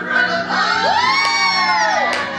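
Children shouting and cheering over music from a PA speaker, with one long shout that rises, holds and falls, starting just under a second in.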